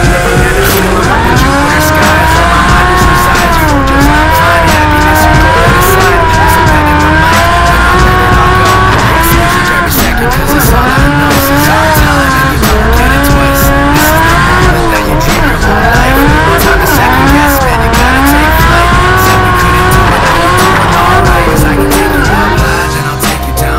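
Drift car engine revving hard up and down over and over through the slide, with tyre squeal, mixed with background music.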